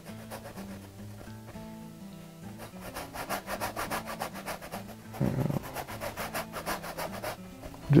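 A paintbrush scrubbing oil paint onto a canvas in quick, rhythmic strokes, several a second. The strokes start about two and a half seconds in and stop shortly before the end, over soft background music.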